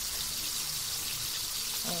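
Chicken pieces frying in hot oil in a wok: a steady sizzle.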